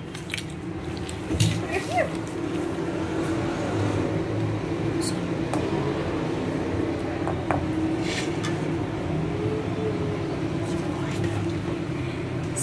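Wire hand whisk beating pancake batter in a bowl: a steady wet stirring noise, with a few scattered light clicks of the wires against the bowl, over a low steady hum.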